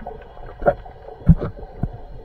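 Muffled underwater thumps and knocks picked up through a camera's waterproof housing while swimming, three short ones over a low rumble.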